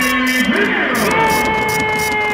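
Background music with long held notes that slide down at their ends, over light, repeated percussion.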